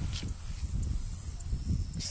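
Low rumble on the microphone with light rustling of cotton leaves as the handheld camera moves through the plants, under a steady high hiss.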